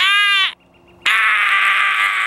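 A man's loud, wordless vocal cries. First comes a short call that falls in pitch. After a brief pause comes a longer harsh, raspy yell lasting about a second and a half.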